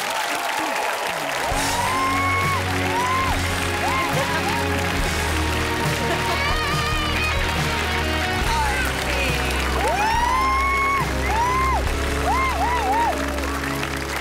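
Audience applauding and cheering, with repeated whoops bunched near the start and again about ten seconds in, over a sustained music bed with a steady low bass note.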